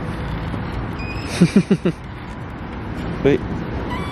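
Steady street traffic noise, with a quick run of four short vocal bursts, like a laugh, about a second and a half in, and a brief laugh near the end.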